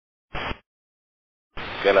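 Mostly dead silence between air-traffic-control radio transmissions, broken about a third of a second in by a quarter-second burst of radio static like a squelch tail. Near the end the hiss of the next transmission opens, and a pilot's voice begins over it.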